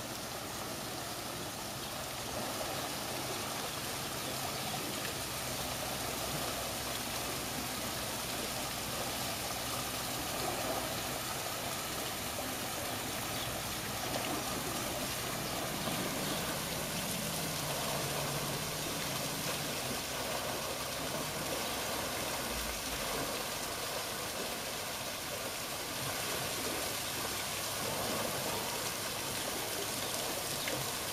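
Steady running water: a small waterfall trickling down a rock wall into a pool.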